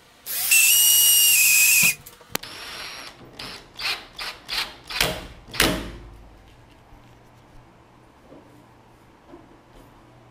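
Handheld power drill with a twist bit running in a steady whine for about a second and a half, then a shorter, higher-pitched run. A series of clicks and knocks follows, ending in a low thump about halfway through.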